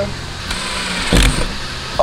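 Cordless drill running as it bores a hole through a wakesurf board, with a steady whine and a louder burst a little past one second. The bit goes through easily.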